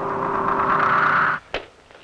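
A sustained eerie drone on the trailer soundtrack: one steady held tone under a hissing band. It cuts off abruptly about one and a half seconds in, followed by a single click and a moment of near-quiet.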